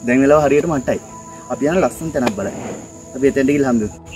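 A man speaking in three short bursts, over a steady high-pitched chirring of insects such as crickets.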